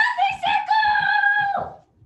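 A woman's high voice singing out, rising in pitch and then holding one long note for about a second before it fades away near the end.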